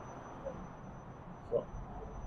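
Low, steady background hum of an MRT train car standing at the platform with its doors open, with a brief faint sound about a second and a half in.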